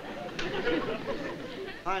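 Studio audience laughing, many voices together, dying down near the end as a man says "Honey."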